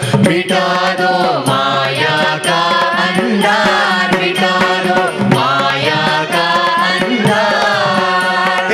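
Group of men and women singing a Carnatic-style devotional song in unison on microphones, over a steady drone with tabla accompaniment.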